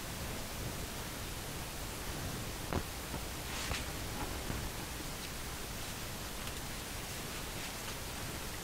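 Steady low hiss of room noise with faint handling sounds from the wet painted canvas being tilted in gloved hands: a small tap a little under three seconds in and a soft rustle shortly after.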